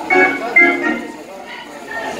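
A voice over a club's PA system: two short pitched phrases in the first second, then a quieter stretch.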